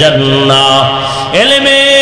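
A man's voice chanting an Arabic hadith in long melodic phrases, holding each note, then sweeping up to a higher held note about one and a half seconds in.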